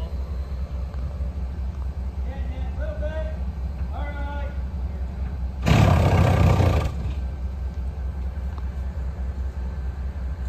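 Heavy construction machinery's diesel engine running with a steady low rumble. About six seconds in, a loud rushing burst lasts about a second, then stops.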